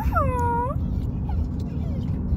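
Pit bull giving one whining, moaning 'talking' call that glides down in pitch and lasts under a second, with a steady low rumble of the moving car underneath.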